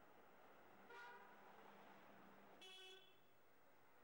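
Two faint, brief car horn toots, about a second in and again about three seconds in, over near silence.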